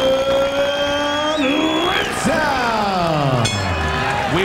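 A boxing ring announcer's long, drawn-out call of the winner's surname, held on one note for about two seconds and then sliding steadily down to a very low pitch until it stops near the end.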